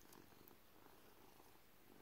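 A domestic cat purring faintly, the purr swelling and fading in a slow rhythm.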